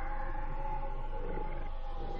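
Electronic noise drone from keyboard sounds and effects pedals: a dense, steady wall of layered held tones over a low hum, with a rough, roar-like grain.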